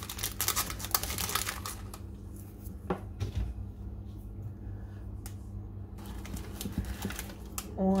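A metal knife scraping and clicking against a metal baking tray as apple pie is cut and a slice lifted out: a quick run of scrapes and clicks in the first two seconds, then a few single clicks.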